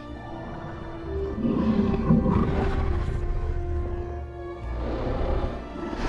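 Film score with sustained held tones, and a deep, rough creature vocal from the giant ape Kong that swells about a second in and eases off after a few seconds.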